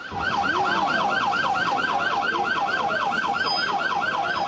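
SAMU ambulance siren sounding a fast yelp, its pitch sweeping up and down about six times a second.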